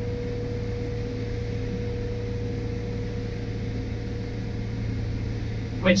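Multihog CV sweeper running in sweep mode, heard from inside the cab: a steady drone of the engine and suction fan, with a constant tone over a low hum.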